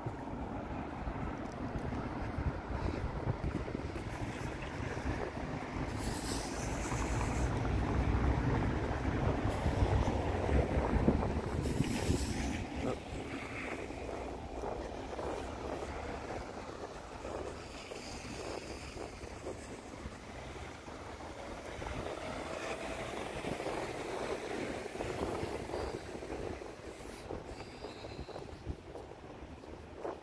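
Town-street noise: road traffic and wind on the microphone, swelling louder for several seconds around the middle, then settling back.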